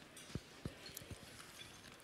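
Quiet, with a few faint, soft taps and clicks in the first half.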